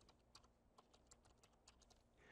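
Faint computer keyboard typing: a quick run of about ten keystrokes as a word is typed out.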